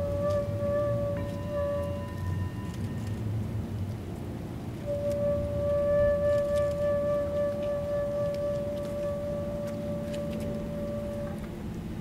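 Flute playing slow, long-held notes: a note held for about two seconds, a short gap, then one long steady note held for about six seconds that stops shortly before the end.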